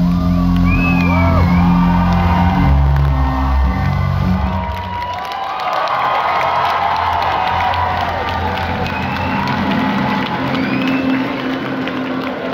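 A live rock band's last low, sustained chord rings out and stops about five seconds in. Underneath and after it, a concert crowd is cheering and whooping.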